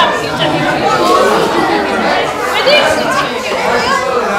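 Group chatter: several voices, some high-pitched, talking over one another with no clear words.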